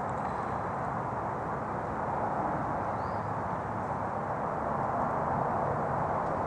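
Steady outdoor background rush with no distinct events, and one brief faint high chirp about three seconds in.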